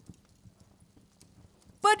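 Near silence: a faint low background hum with a few soft clicks, then a woman's voice begins near the end.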